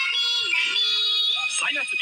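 TV commercial jingle: music with a long held sung note, then a voice comes in quickly about a second and a half in.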